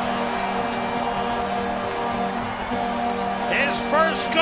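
Arena goal horn blaring one long, steady chord over crowd noise, celebrating a home-team goal.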